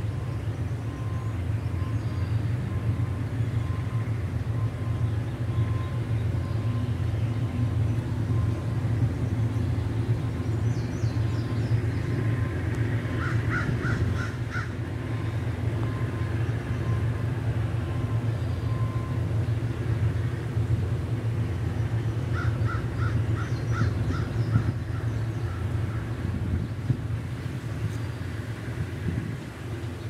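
A distant diesel freight locomotive running steadily, a low rumble throughout. Twice, about halfway through and again about three-quarters of the way in, a bird calls in a short run of rapid notes.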